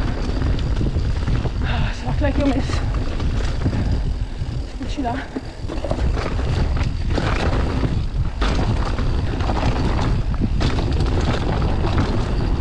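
Mountain bike descending a rocky forest trail, heard from a camera riding on the bike or rider: a steady wind rumble on the microphone, with the tyres rolling over dirt and stones and the bike rattling and knocking over bumps.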